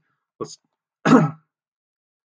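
A man clears his throat once with a short cough about a second in, just after a brief spoken word.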